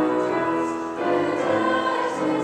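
Mixed choir of boys' and girls' voices singing held chords, moving together to a new chord about a second in.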